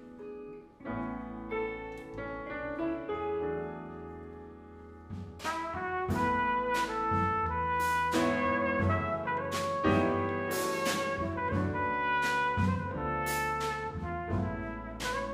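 Live jazz band playing a slow tune: soft piano over upright bass, then about five seconds in a trumpet takes the melody and the drums come in with cymbal strokes, and the music grows louder.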